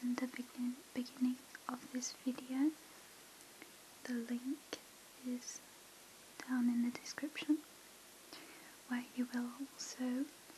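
A woman's soft-spoken voice talking quietly close to the microphone in short phrases with brief pauses.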